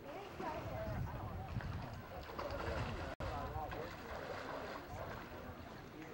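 Wind buffeting the camcorder microphone in an uneven low rumble, under indistinct voices; the sound cuts out for an instant about three seconds in.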